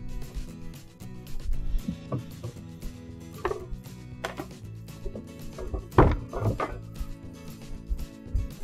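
Background music under a few sharp wooden knocks and clatters as scrap boards and a circular saw are moved about on a wooden table, the loudest knock about six seconds in.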